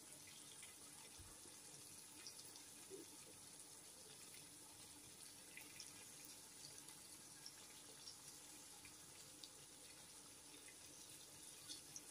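Fish pieces simmering faintly in masala gravy in a wok: a low, steady hiss with occasional small pops.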